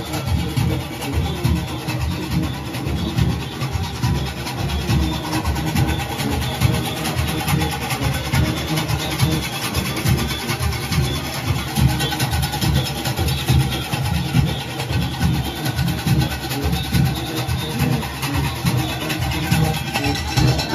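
A Junkanoo band playing on the move: dense goatskin drumming with cowbells, keeping up a loud, steady beat.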